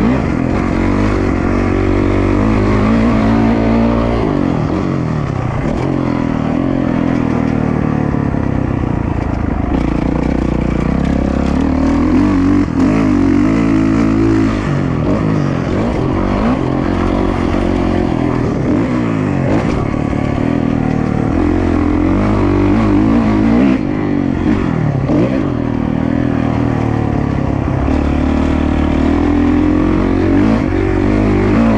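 Dirt bike engine being ridden hard on a motocross track: the revs climb and drop again and again as the rider accelerates, shifts and backs off.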